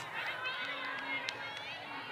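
Several distant voices shouting and calling across an open field, overlapping, with no clear words.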